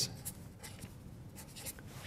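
Sharpie marker pen writing on brown paper: a series of short, faint scratchy strokes as the digits are drawn.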